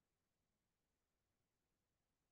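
Near silence: only the faint noise floor of the recording.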